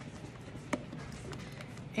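Spatula folding whipped topping through a thick pudding mixture in a stainless steel bowl: soft, faint stirring with a light tap or click against the bowl about three-quarters of a second in.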